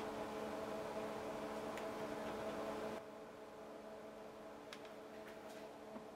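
Low steady hum of bench test equipment, several fixed tones over a faint hiss, getting somewhat quieter about halfway through. A few faint clicks are also heard.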